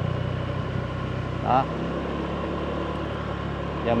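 Car engine and road noise heard from inside the cabin while driving slowly: a steady low hum.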